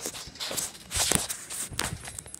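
Handling noise from a handheld phone: fingers rubbing and shifting against it close to the microphone, with a few soft knocks.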